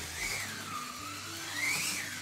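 Small electric motor of a Revoslot Marcos LM600 1/32 slot car whining as it laps. The pitch dips in the first second and climbs again near the end as the car speeds up.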